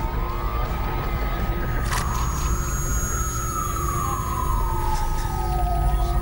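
Police siren wailing, its pitch slowly sweeping down and back up, over low droning background music with a sharp hit about two seconds in.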